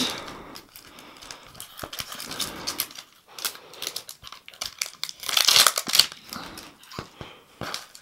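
Clear plastic shrink wrap crinkling as it is peeled off a Poké Ball tin, in scattered crackles with a louder burst a little past halfway.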